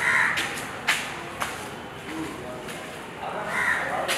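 Crows cawing: a harsh call at the start and another near the end, with two sharp clicks in between.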